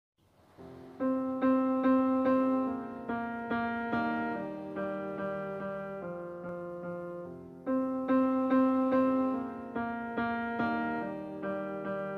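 Solo piano intro of a karaoke backing track: slow chords struck one after another, each note ringing and fading. It starts about a second in, and the phrase begins again about halfway through.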